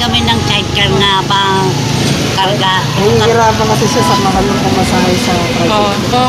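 People talking over the steady low running of a motor vehicle engine close by in street traffic.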